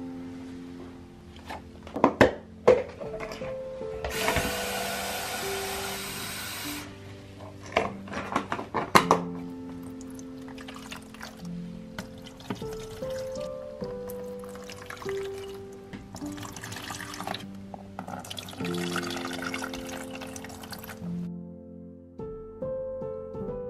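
Gentle background music with a slow melody. Over it, water is poured from a watering can onto seedling trays in a few spells, the longest about four seconds in, lasting nearly three seconds. There are a few sharp knocks about two seconds in and again around eight to nine seconds.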